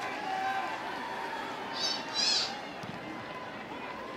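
Crowd noise in a domed football stadium during a punt play: a steady murmur of many voices, with a brief shrill, high-pitched burst from the crowd about two seconds in.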